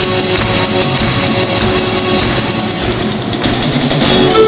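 Live band music: acoustic guitars and a drum kit playing a loud, full instrumental passage.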